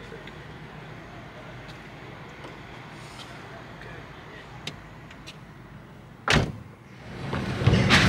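A vehicle running at idle with a low steady hum and a few faint clicks, then a car door shut with one loud thump about six seconds in. Noise of the vehicle moving off rises near the end.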